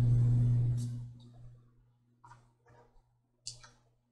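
Perfume atomizer sprayed onto a paper scent strip: a sudden pump click and a hiss that fades out over about a second, followed by a few faint handling clicks.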